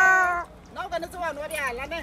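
A woman's voice holding a long, high sung note that fades out about half a second in, followed by softer, wavering vocal sounds.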